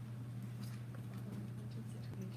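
Quiet room tone dominated by a steady low electrical hum, with a few faint scattered clicks and rustles.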